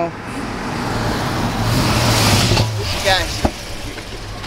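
The 2010 Chevrolet Corvette's 6.2-litre V8 drives up and pulls alongside. Its low engine hum and road noise build to a peak about two seconds in, then die down as the car slows to a stop. A brief spoken word is heard near the end.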